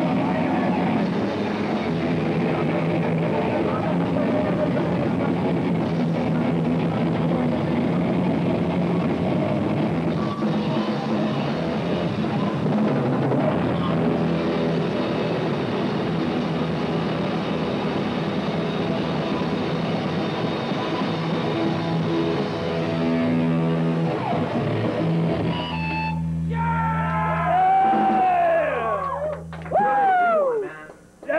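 A live rock band playing loud: electric guitars, bass and a pounding drum kit. About 25 seconds in, the band stops on a held low note while bending, wavering tones ring over it.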